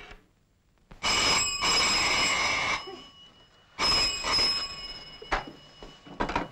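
Desk telephone bell ringing twice: a long ring of almost two seconds, then, after a pause of about a second, a shorter ring.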